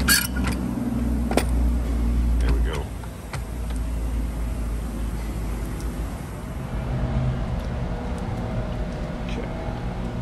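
Metal clicks and clanks of a bench vise being clamped onto a spin-on oil filter, with a low rumble through the first three seconds and softer handling noise after.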